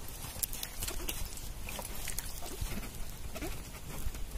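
Hands washing a potato in a metal pan of water: irregular splashing and rubbing, with drips and short plops falling back into the water.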